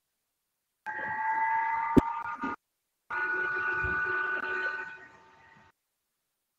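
Two stretches of steady electronic tone, several pitches held together like a chord, each lasting a couple of seconds, with a sharp click in the first one.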